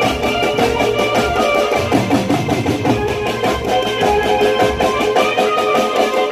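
Live garba band playing an instrumental passage: a melody line over drums keeping a quick, steady beat.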